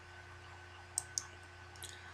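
Two sharp clicks of computer controls about a second in, a fifth of a second apart, with a fainter click near the end, over a faint steady electrical hum.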